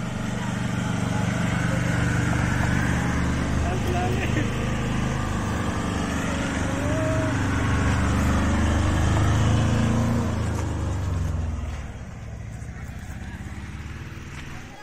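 Engine of a small Tata Ace-based passenger van driving past close by, a steady note that grows louder until about ten seconds in, then drops away after about twelve seconds as the van pulls off.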